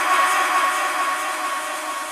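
Breakdown of an electronic dance track: sustained synth chords over a hissing noise wash, with no kick drum or bass, slowly easing off. This is the build before the drop.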